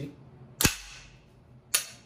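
Bolt of a JP GMR-15 9mm carbine released and slamming shut: a sharp metallic clack with a low thud about two-thirds of a second in, then a lighter click about a second later.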